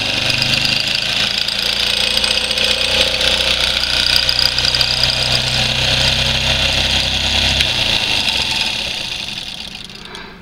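Miniature brass four-cylinder solenoid electric engine running steadily and smoothly, a high even whir over a low hum. The hum drops out near the end and the sound fades over the last two seconds.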